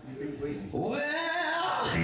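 A singer's drawn-out wailing cry into the microphone, sliding and bending in pitch, getting much louder a little before halfway.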